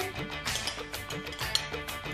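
Background music with a steady beat in short repeated notes.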